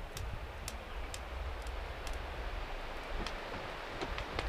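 Wind rumbling on the microphone outdoors, with a light hiss and sparse, sharp high ticks at irregular intervals, about one or two a second.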